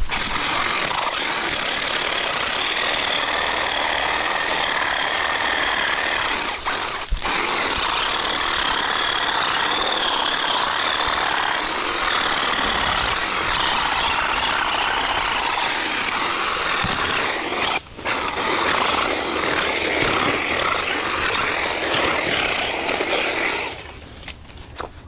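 Hedge trimmer running with its blades chattering as it cuts through a roped bundle of dry pampas grass stalks, a steady whining buzz that breaks off for a moment about seven seconds in and again near eighteen seconds.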